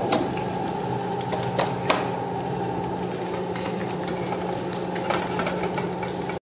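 Two eggs frying in oil in a pan: a steady sizzle over a low hum, with a few sharp clicks of metal on the pan, the loudest just under two seconds in.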